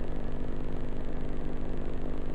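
Steady hum and hiss with a fast, even flutter: the background noise of an old tape recording, heard in a pause between spoken phrases.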